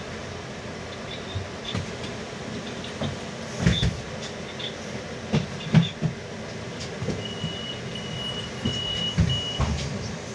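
Inside a Solaris Urbino 18 articulated city bus on the move: steady running and road noise with several sharp knocks and rattles from bumps, the loudest a little past the middle. Shortly after that, a high electronic beep sounds about four times in quick succession.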